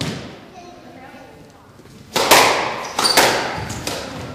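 Squash ball being struck by rackets and hitting the court walls: two loud sharp cracks about a second apart, past the middle, each ringing on in the echo of the enclosed court.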